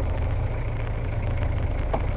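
Fishing boat's engine idling with a steady low rumble.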